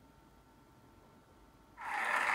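Near silence: faint hiss with a faint steady tone, until a sudden loud burst of noise starts just before the end.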